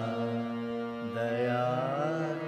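Male voice singing a devotional Sai bhajan in long held notes that slide slowly in pitch, over a steady instrumental drone.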